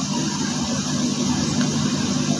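A steady low hum with an even hiss over it, like an engine idling.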